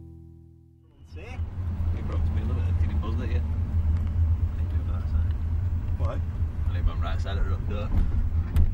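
A car driving, heard from inside the cabin: a steady low engine and road rumble that starts about a second in, just after music fades out.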